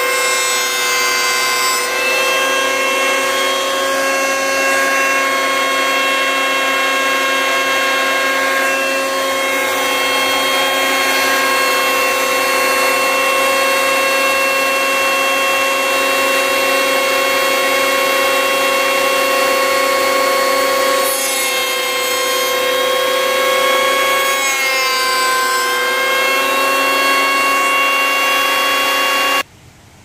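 Ryobi electric hand planer, mounted upside down as a jointer, running with a loud, steady high whine while a board is fed across it. Its pitch dips briefly twice late on, and it cuts off suddenly near the end.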